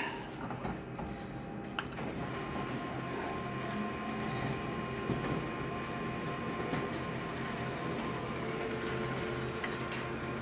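Colour office photocopier running a copy job: a click about two seconds in, then a steady mechanical whir with a thin high whine as it prints the copy.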